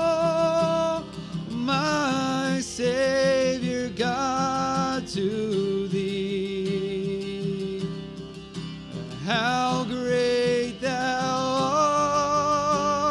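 Worship music: sung lines of a hymn-style chorus over guitar accompaniment, with a long held note in the middle where the singing drops out for a few seconds.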